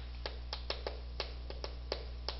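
Chalk tapping against a chalkboard while characters are written: a quick run of short, irregular taps, over a steady low electrical hum.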